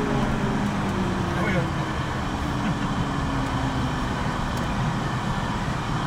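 Vehicle engine running at low speed, heard from inside the cab, its note falling gently over the first few seconds as it slows.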